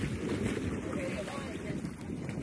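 Wind buffeting the microphone over open water, a steady low rumble, with faint voices about a second in.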